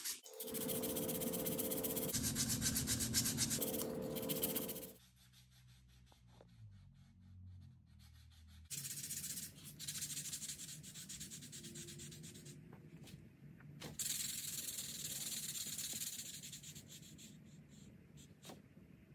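Sandpaper rubbed by hand back and forth over a small wooden popper-lure body, a fast scratchy rasp of short strokes. It stops about five seconds in and starts again, softer, about four seconds later, fading near the end.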